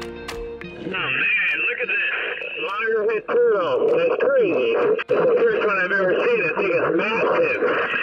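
Background music for about the first second, then a diver talking excitedly about a loggerhead turtle through a full-face mask's underwater communication unit, the voice thin and radio-like.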